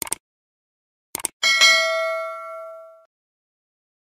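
Subscribe-button animation sound effect: two quick mouse clicks at the start and another two about a second in, then a bright bell ding that rings for about a second and a half and fades out.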